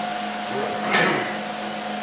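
Steady hum of running shop equipment, with two held tones, and a short rustling noise about a second in.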